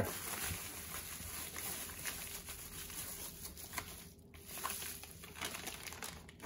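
Soft, continuous rustling and crinkling of packing wrap, bubble wrap and a plastic bag as hands unwrap a new hand tool.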